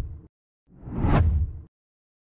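Whoosh transition sound effects: the tail of one whoosh fading out in the first quarter second, then a second whoosh that swells and fades over about a second, with a deep rumble under it.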